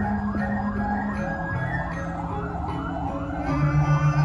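Balinese gamelan music: sustained ringing metallophone notes over even, light strokes. Near the end a deeper, louder note comes in with a fast throbbing beat.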